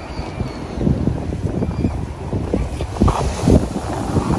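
Sea wind buffeting the microphone in irregular rumbling gusts, strongest about three seconds in, over beach surf.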